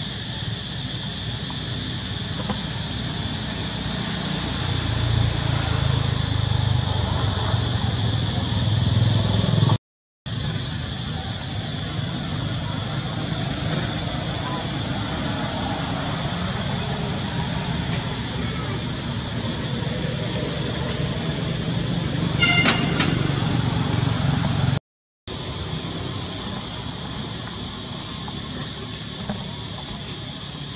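Steady high-pitched insect drone, typical of cicadas, with a low rumble swelling in the first third. The sound cuts out briefly twice, about ten and twenty-five seconds in.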